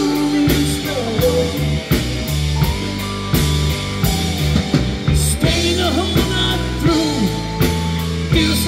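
Live rock band playing an instrumental passage, with electric guitar over a steady bass line and a drum kit.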